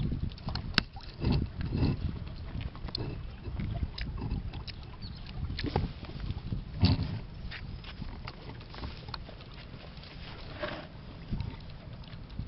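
Small splashes and knocks as hands sort live shrimp and eels in a plastic tub of water, over a low wind rumble on the microphone. The sharp splashes come irregularly, the loudest about seven seconds in.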